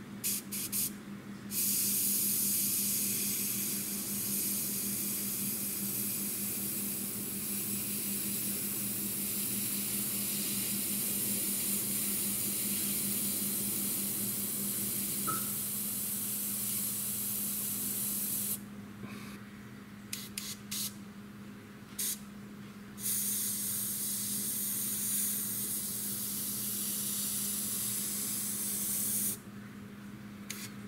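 Airbrush spraying paint in hissing bursts: a few quick puffs at the start, one long spray of about seventeen seconds, several short puffs, then another long spray of about six seconds that stops shortly before the end. A steady low hum runs underneath.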